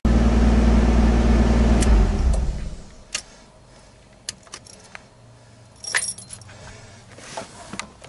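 An R32 Skyline's engine running, then switched off about two seconds in and winding down. A few sharp clicks and a jangle of keys follow about six seconds in.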